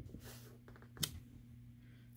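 A single light click about a second in, from a clear acrylic stamp block being handled on cardstock, over a low steady room hum.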